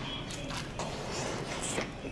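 Quiet chewing and mouth sounds of a person biting into and eating a large steamed dumpling, with a few faint clicks.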